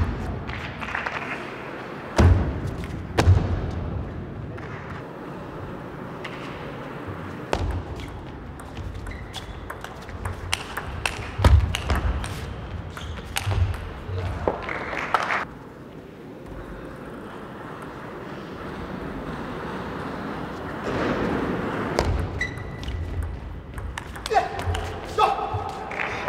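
Table tennis rallies: the ball clicking off the table and the rackets in quick, irregular hits, in a large hall. Two points are played, each followed by a short rise of crowd noise.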